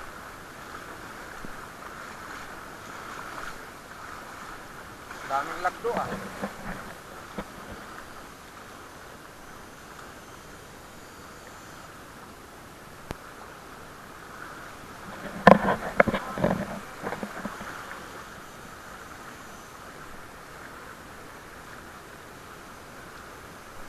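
Steady rush of a fast-flowing, flood-swollen river, with wind on the microphone. Two clusters of short loud bursts break through, about five seconds in and again about fifteen seconds in.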